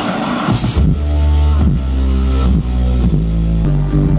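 Live band music with electronic sounds: a deep bass line stepping from one held note to the next under steady chords, with a short burst of high noise about half a second in.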